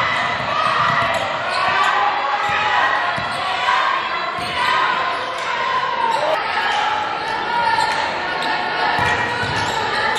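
Basketball dribbled on a hardwood gym floor during a game, with repeated bounces under the steady sound of players and spectators calling out, all echoing in a large gym.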